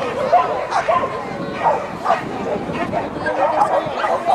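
Dogs barking, mixed with people's voices.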